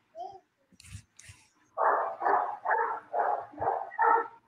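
A dog barking about six times in quick, even succession in the second half, after a few faint clicks.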